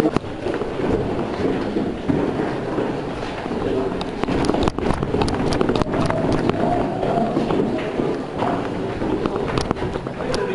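Close-up handling and movement noise from players' gear and clothing against the camera, with muffled voices in the background. About four seconds in comes a scattered run of sharp clicks lasting about two seconds, and two more clicks come near the end.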